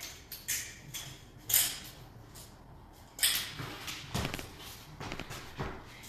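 A jump rope being handled while a knot is tied in its cord to shorten it: soft rustles of the cord with a scatter of light clicks and taps from the handles.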